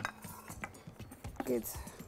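Faint, light clinks of kitchen dishes and a plastic bowl being handled as food is moved into a dish, with a short spoken word near the end.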